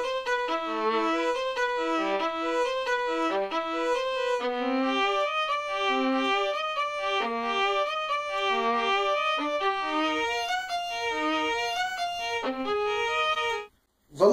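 Sampled violin from the Alpine Violin 1 virtual-instrument library playing a brisk melody of short, separate notes, completely dry with no reverb. It stops suddenly shortly before the end.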